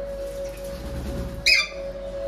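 A single short, loud squawk from an Alexandrine parakeet about one and a half seconds in, over a steady background tone.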